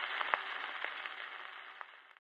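Surface noise of a 78 rpm gramophone record with no music on it: a steady hiss with a few scattered clicks and crackles, fading out near the end.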